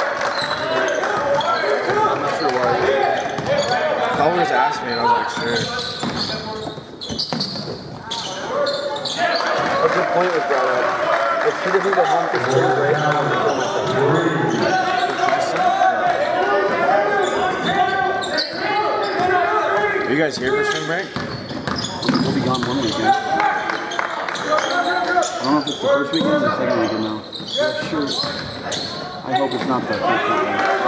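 Voices of people talking during a basketball game, with the thuds of a basketball being dribbled on a hardwood gym floor.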